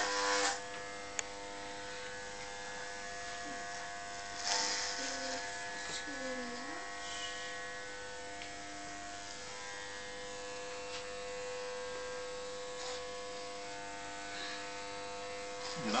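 Corded electric hair clippers running with a steady buzz as they cut a man's hair.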